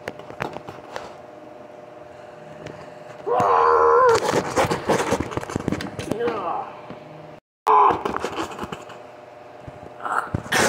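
A person's voice making loud wordless vocal sounds, with no words, for about four seconds starting about three seconds in, cut by a brief dropout and followed by one more short burst. Light knocks and clicks of the toy being handled come before and through it.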